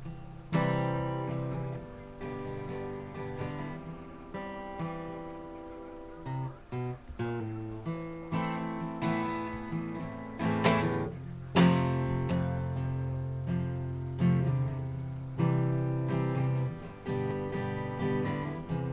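Acoustic guitar strummed, each chord left to ring, growing louder about halfway through.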